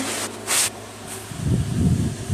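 Handling noise from the phone being moved about against soft plush toys: a brief rustle, then uneven low rubbing and rumbling from about a second and a half in.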